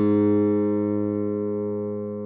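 Software-rendered bass guitar holding a single low note, an A-flat on the first fret of the G string, ringing on and slowly fading.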